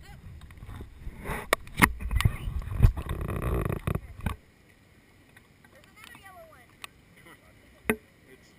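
Handling noise on a GoPro camera: rumbling with several knocks as the camera is moved about, stopping suddenly about four seconds in. After that it is much quieter, with faint voices.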